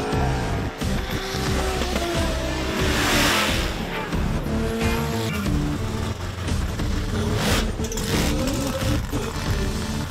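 Background music with a heavy beat over a supercharged car's engine revving hard and its tyres squealing in a burnout, the tyre noise loudest about three seconds in.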